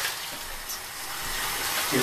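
Shower head spraying water in a steady hiss, running over a person and splashing in a tiled shower stall.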